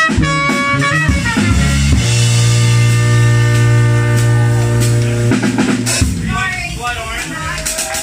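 Live jazz band: trumpet plays a run of short notes, then holds one long note from about two seconds in to just past five, over electric bass and drum kit.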